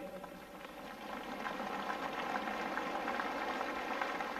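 Concert audience applauding, swelling over the first second or so and then holding steady.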